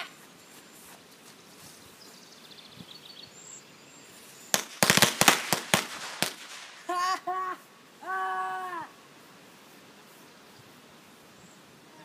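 Firecrackers strapped to a model plane going off in a rapid string of about a dozen sharp bangs over less than two seconds, starting about four and a half seconds in.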